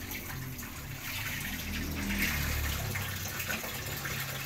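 Vegetable broth simmering in a wok over a portable gas stove: a steady watery bubbling.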